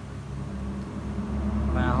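A low, steady engine-like rumble that grows louder about a second and a half in, like a motor vehicle running close by.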